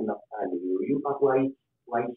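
Only speech: a man talking into a close microphone in short phrases.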